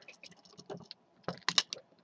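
Small clicks of hard plastic parts on a Transformers Robots in Disguise Railspike figure being handled and moved during its transformation, with a few sharper clicks about a second and a half in.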